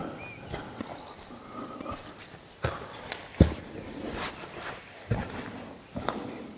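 A hiker's footsteps on a forest trail: a handful of irregular, sharp steps, the loudest about halfway through.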